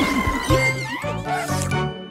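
Children's cartoon background music, with a few short upward-sliding notes about a second in.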